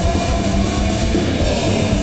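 Punk band playing live: distorted electric guitar, bass and drums, heard from far back in an open-air audience.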